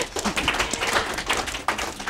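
Applause, many hands clapping, loud at first and dying away over about two seconds.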